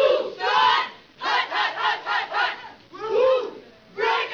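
A group of voices shouting together in a rhythmic chant: two shouts at the start, a quick run of short yells in the middle, and one long shout near the end.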